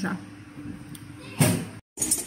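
A single short thump about one and a half seconds in, over a faint steady hum, followed by a moment of dead silence where the recording is cut.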